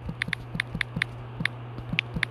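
Quick taps typing on a smartphone's on-screen keyboard: about eight short, sharp clicks at an uneven pace, over a steady low hum.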